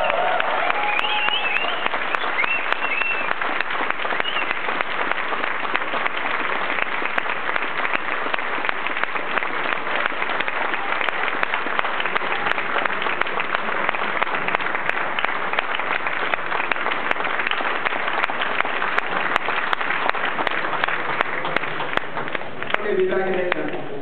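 Audience applauding steadily: dense, even clapping that fills the hall at a constant level.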